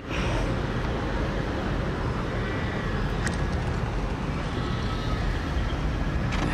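Steady outdoor rumble and hiss, heaviest in the low end, of the kind wind and road traffic make, with a light click about three seconds in.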